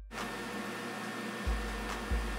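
Steady room tone with a soft hiss, broken by two soft low thumps about one and a half and two seconds in.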